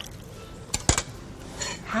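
Two quick, sharp clinks of metal kitchen utensils against a dish or pot, a little under a second in.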